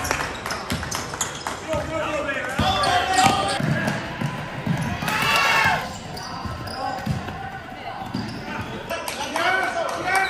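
Basketball dribbling and bouncing on a hardwood gym floor, mixed with players' and spectators' voices in a large echoing gym. A brief high-pitched squeal comes about five seconds in.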